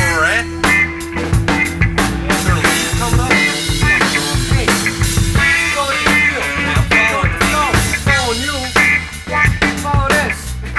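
Rock band playing a long jam: a drum kit keeps a steady beat under a lead electric guitar soloing with bent, sliding notes.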